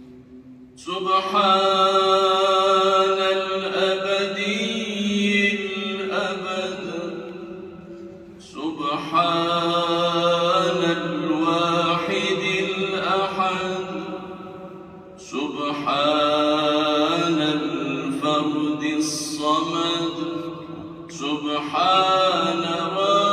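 A man's solo voice chanting Arabic dhikr in three long, ornamented melodic phrases, with short pauses between, part of the devotions that close the dawn (Fajr) prayer. The voice rings in a large reverberant domed hall.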